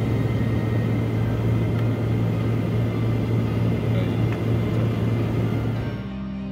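Steady drone of an aircraft in flight heard from inside the cockpit: a strong constant low hum under an even rushing of engine and airflow noise.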